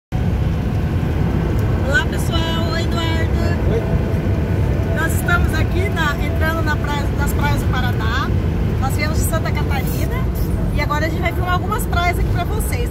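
Steady low rumble of a moving motorhome heard from inside its cab, with voices talking over it.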